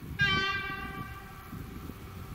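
Train horn sounding a short blast: it starts sharply a fraction of a second in and fades away over about a second.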